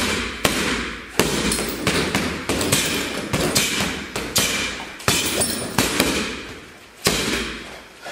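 Boxing gloves punching hanging heavy bags in quick combinations: sharp smacks about two a second, each trailing off in a short rattle and room echo, with a brief pause near the end.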